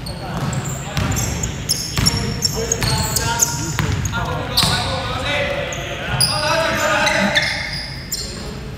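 Basketball game in a large indoor gym: a ball dribbling with sharp knocks on the hardwood court, sneakers squeaking in short high chirps, and players' voices calling out in the middle seconds, all echoing in the hall.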